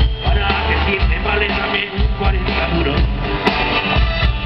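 Live rock band playing a song, with electric guitars over bass and drums and a man singing.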